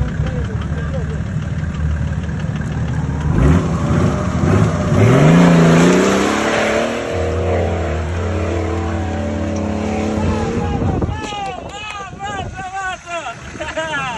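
Mercedes OM606 inline-six diesel in a Jeep Cherokee XJ working under load on a climb. It runs with a low rumble, then revs up over about two seconds and holds high, and it eases off near the end.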